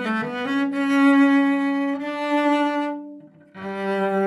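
Solo cello played with the bow in a free improvisation. It changes note near the start, holds one long note that fades out about three seconds in, and after a brief gap begins a new note near the end.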